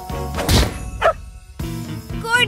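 A cartoon sound effect over background music: a heavy thud about half a second in, then a quick falling whoosh.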